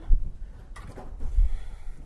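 A brush drawn down through a poodle's tail hair, a soft scratchy rustle starting a little before the middle. Two low bumps, one just after the start and one about a second and a half in.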